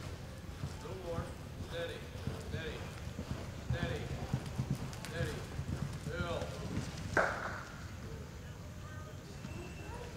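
Hoofbeats of a horse loping on the soft dirt footing of an indoor arena, under people's voices, with one short, loud sound about seven seconds in.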